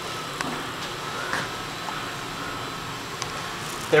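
Otis Gen2 traction elevator car travelling upward, heard from inside the cab as a steady, even hum with a few faint clicks.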